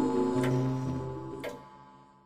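A clock ticking about once a second under sustained music chords that fade out over the two seconds.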